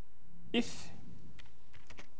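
Computer keyboard keys tapped a few times while code is typed, with one spoken word about half a second in.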